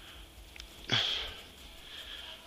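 Skis scraping across groomed snow in a turn: a short hissing rush about a second in that fades quickly.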